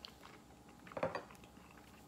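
Faint clicks and light knocks of a spoon and a plastic squeeze bottle being handled at the table, the loudest cluster about a second in.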